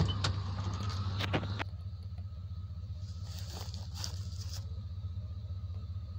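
1990 Chevrolet K1500 pickup's engine idling with a steady, even low rumble. A few sharp clicks and knocks sound in the first second and a half.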